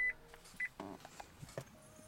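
Two short, high electronic beeps from the Nissan Leaf's instrument panel as the electric car powers on, the first right at the start and the second about half a second later.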